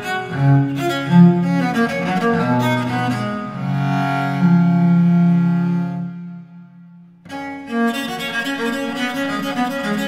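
Solo viola da gamba playing an unaccompanied Baroque sonata: a run of bowed notes ending on a long held low note that dies away into a brief pause, after which the playing starts again.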